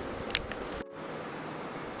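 Steady hiss of background room noise, with a short click about a third of a second in and a split-second dropout just under a second in, where two recordings are joined.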